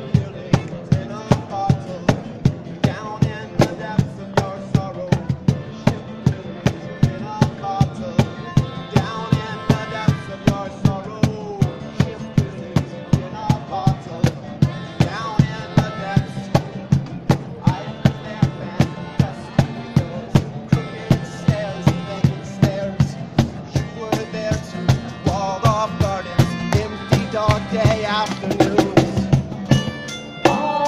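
Live acoustic street band playing an instrumental passage: a cajón keeps a steady beat of about two to three strokes a second under strummed acoustic guitar and a sustained melody line from a melodica.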